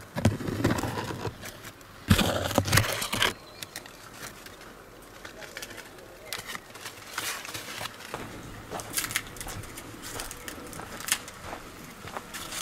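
Fig leaves rustling and brushing against the camera as it moves through the tree. The loudest burst comes about two seconds in, followed by scattered soft rustles and clicks.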